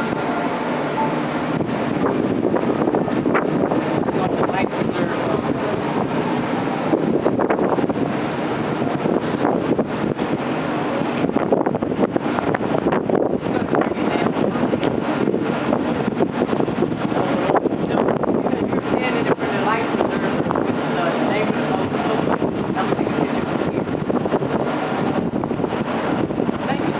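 Steady running noise of a sightseeing boat under way, mixed with wind on the microphone and indistinct background voices.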